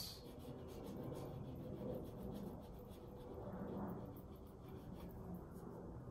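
Shiva oil paint stick dragged in strokes across unprimed rag paper, a faint scratchy rubbing.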